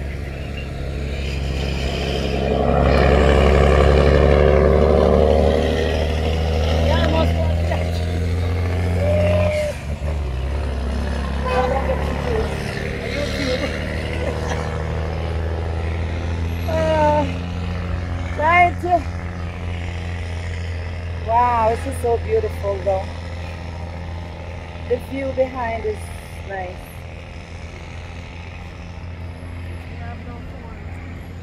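Road traffic outside: a steady low rumble, with a motor vehicle passing louder a few seconds in. Short bits of voices or calls come and go through the second half.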